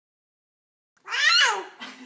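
Silence, then about a second in a loud, high-pitched cry that slides down in pitch and lasts about half a second, followed by a fainter short sound.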